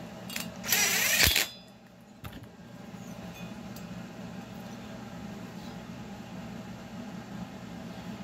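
Chainsaw engine parts handled on a workbench as the bare cylinder is picked up. There is a short metallic clatter with a sharp click about a second in and one more click a second later, then a steady low background hum.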